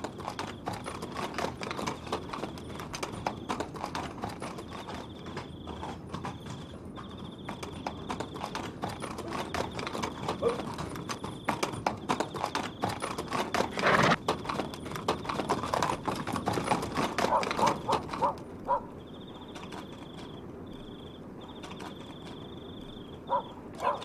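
Horses' hooves clip-clopping on hard ground as several horses pass. The hoofbeats are busiest in the middle, thin out about three-quarters of the way through, and pick up again near the end.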